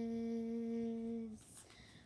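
A girl's voice holding one long hummed note at a steady pitch, the end of a sung line, which stops about one and a half seconds in.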